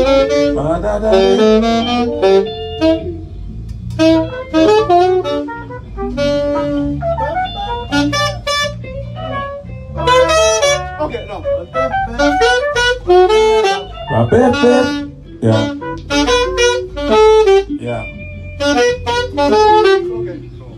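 Live konpa band playing a riff in rehearsal: horn lines, led by saxophone, over electric bass, keyboard and drums, in repeated phrases with short breaks between them.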